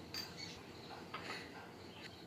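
A few faint clicks and taps of kitchen utensils against a glass mixing bowl, a small one just after the start and a couple more past the middle.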